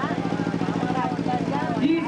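People's voices over a steady low hum with a fast, even pulse.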